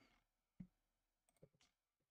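A few faint computer mouse clicks over near silence, the loudest about half a second in.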